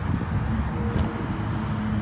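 Steady low outdoor rumble with one sharp click about a second in and a faint hum setting in about halfway through, while the motorcycle is readied for starting; its engine has not yet fired.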